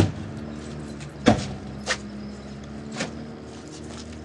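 Doors of an SUV being shut: a sharp slam right at the start and another about a second in, then lighter knocks, over a steady low hum.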